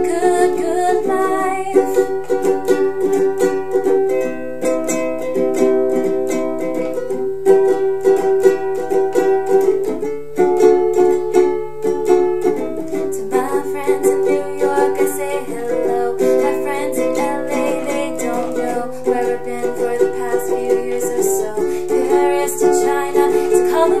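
Ukulele strummed steadily in an instrumental break, cycling through a G–C–Em–D chord progression.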